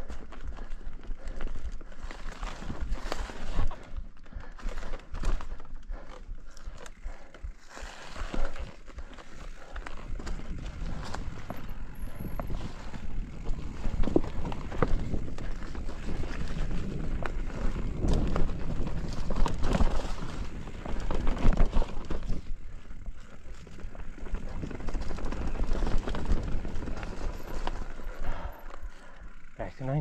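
Mountain bike ridden along a dry forest singletrack: tyres crunching over leaf litter and roots, the bike clattering over bumps in quick irregular knocks, over a steady low rumble.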